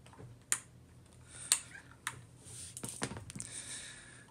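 Sharp metallic clicks and small knocks, about half a dozen at uneven spacing, from a SIG SG 553 rifle's receiver parts as the hands work at a stuck front pivot pin.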